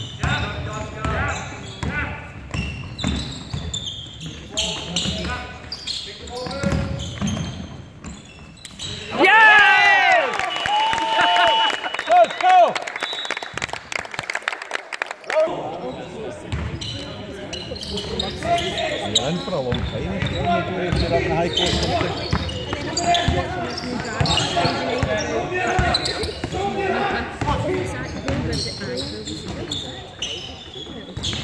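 A basketball bouncing on a sports hall floor amid players' shouts, the knocks ringing in the large hall. About nine seconds in comes the loudest moment, a loud shout with a thin steady whistle tone, and play halts briefly before the bouncing and voices resume.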